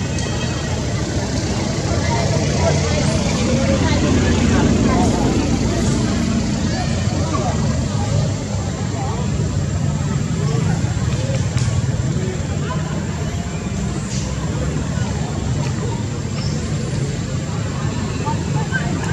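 Steady outdoor background rumble, like distant traffic, with faint indistinct voices running through it.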